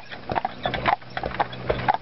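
Carriage horses' hooves clip-clopping on a paved road at a steady walk, a quick even run of hoof strikes, about five a second.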